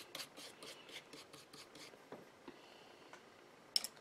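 Brush scratching glue onto paper in quick back-and-forth strokes, about five a second, through the first two seconds, then a sharp click near the end.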